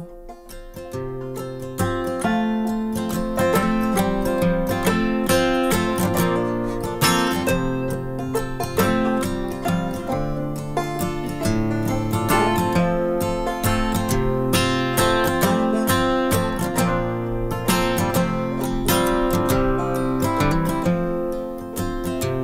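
Acoustic guitar strummed and open-back banjo picked together in an instrumental break between the sung verses of a slow folk ballad. It is softer for about the first second, then plays on at an even level.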